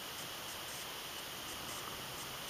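Quiet outdoor field ambience: a steady hiss with a constant high buzz, and soft high pulses a few times a second.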